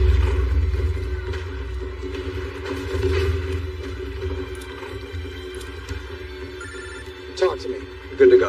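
Film score with a low, steady drone fading down, then a short electronic phone ring about seven seconds in, followed by a man's voice near the end.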